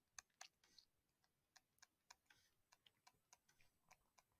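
Near silence with faint, irregular clicks, a dozen or more, from a digital pen tapping and stroking on a drawing surface as short hatching marks are drawn.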